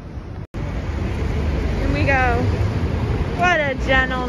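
City street noise: a steady low rumble of traffic and wind on a handheld phone microphone. It cuts out briefly about half a second in, and a short wordless voice sound comes twice, about two seconds in and again near the end.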